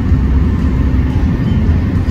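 Car travelling at highway speed, heard from inside the cabin: a steady, loud low rumble of road and wind noise.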